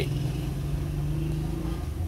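A steady low hum lasting almost two seconds, over a continuous low background rumble.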